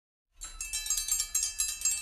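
Metal triangle struck in a quick steady rhythm, about five strokes a second, ringing bright and high, starting about half a second in as the introduction to a Greek kalanta carol.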